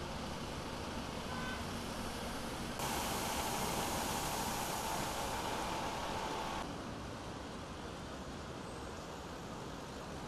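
Road traffic noise: a steady hum of cars and trucks passing on a busy road. A louder stretch of about four seconds in the middle carries a steady whine and starts and stops abruptly.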